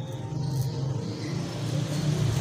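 A steady low mechanical hum with no words over it.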